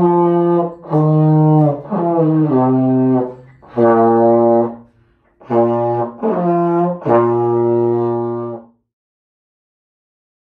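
Slide trombone playing a slow phrase of held notes, stepping between pitches, with short breaks for breath. The playing stops near the end.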